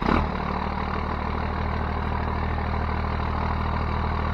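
A 12-valve Cummins diesel engine idling steadily, a low even drone that comes in abruptly.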